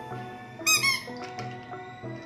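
Background music with a simple melody of stepped notes. A little over half a second in comes a loud, high-pitched double squeak from a squeaky rubber toy being squeezed.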